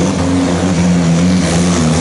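Superstock pulling tractor's diesel engine running loud at steady revs, with a slight shift in pitch near the end.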